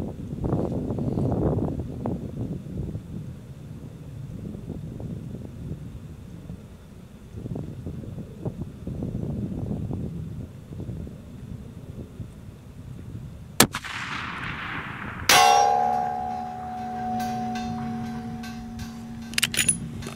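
A single .338 Lapua rifle shot as a sharp crack, followed about a second and a half later by a loud clang from the steel target plate. The plate rings on with several steady tones for about four seconds. Before the shot, wind rushes on the microphone in gusts.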